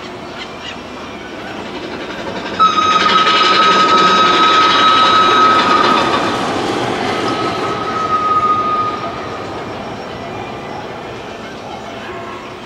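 Big Thunder Mountain mine-train roller coaster running along its track: a rumbling, clattering pass that swells a couple of seconds in and dies away about nine seconds in, with a high steady squeal through most of the loudest part.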